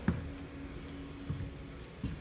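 Footsteps on the vinyl plank floor of an RV: a sharp low thud just after the start and a softer one a little past the middle, over a faint steady low hum.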